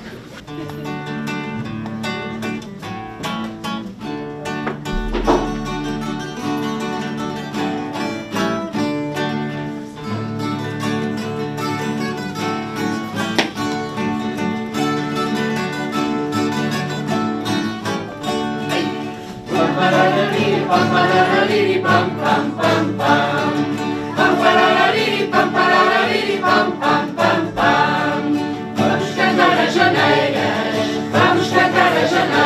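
Acoustic guitars playing a strummed and plucked instrumental introduction. About two-thirds of the way through, a choir of women and children joins in singing, and the music gets louder.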